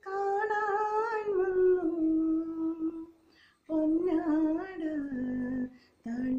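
A woman singing a slow melody unaccompanied, in two long held phrases that each drift down in pitch, with a short pause between them.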